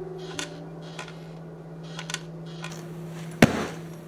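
A single heavy thud about three and a half seconds in, typical of a bag landing on a concrete floor, over a steady low hum with a few faint clicks.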